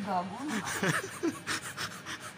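People talking, a short word followed by more voice sounds.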